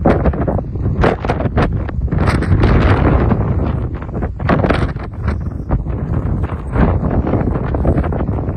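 Strong wind buffeting the microphone in uneven, gusting surges.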